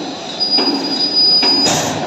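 Electric rebar bending machine bending TMT steel bars: metallic clanks about once a second, with a high, steady metal squeal through the middle that ends in a short harsh scrape near the end.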